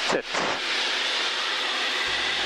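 Steady rushing cockpit noise of an Extra aerobatic aircraft in a climbing turn, its engine and the airflow heard as an even hiss through the intercom, after one spoken word at the start.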